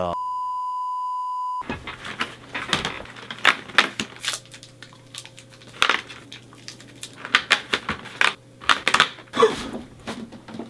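A steady, high, even beep lasting about a second and a half, then the crackling, clicking and rustling of a cardboard advent calendar being handled and its doors pulled open.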